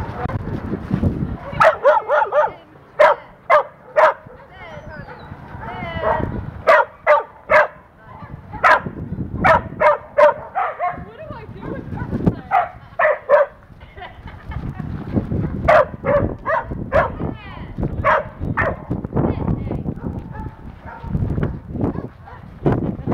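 Dogs barking during play: high-pitched barks and yips in about five quick runs of two to five barks each, with short pauses between the runs.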